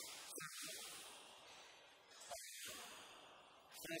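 Near silence: a faint steady hiss of room tone with soft breathing picked up by a headset microphone, and a short utterance beginning right at the end.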